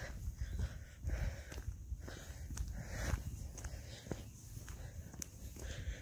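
Footsteps on an asphalt path, about two steps a second, over a low rumble on the phone's microphone.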